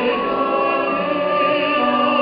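A choir singing, holding long notes with a slight vibrato and moving to new notes about a second in.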